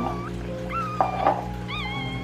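A newborn puppy squeaking several times, in thin high kitten-like cries that rise and waver, over steady background music. A brief knock comes about halfway through.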